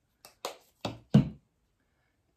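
Four short knocks and taps of supplies handled on a worktable, the last one loudest and deepest, as a small plastic paint bottle is set down.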